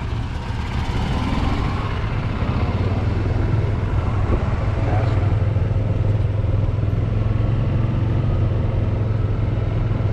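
Golf cart driving along, heard from on board: a steady low hum and rumble from the cart and its tyres on the road, growing a little louder about two seconds in.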